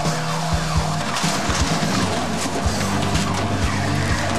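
A car speeding off with its tyres skidding, heard over music with a steady beat.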